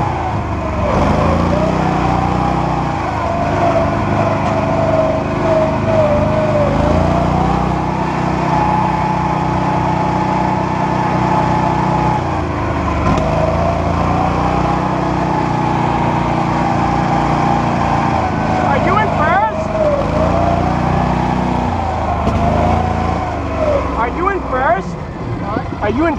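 A Coot ATV's engine runs as it drives along a trail. Its pitch drops and climbs again several times as the throttle is eased and opened, with a few brief squeaks about two-thirds of the way in and near the end.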